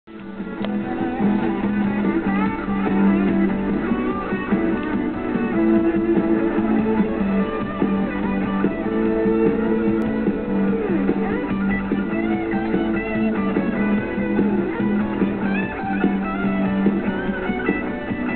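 Rock band playing an instrumental intro on electric guitars, a wavering lead line over sustained low chords, with no singing.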